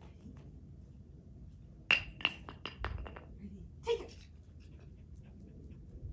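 A thrown retrieve dumbbell landing on brick pavers and bouncing: about five sharp, ringing clinks coming quicker and quicker, about two seconds in, followed by one more knock near four seconds.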